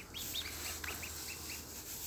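Newly hatched Muscovy ducklings peeping: a string of short, high peeps, several a second.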